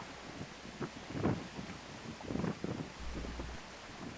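Wind buffeting the microphone over a soft wash of surf breaking on a rock wall, with a low gust rumble about three seconds in.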